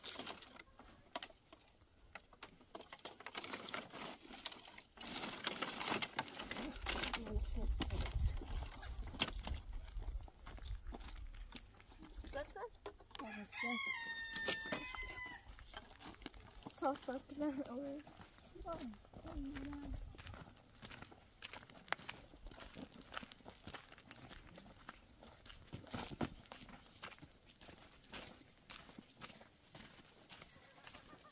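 Dry firewood branches knocking and clattering as they are pulled from a pile and gathered into armloads. A rooster crows once about halfway through, and a woman laughs briefly soon after.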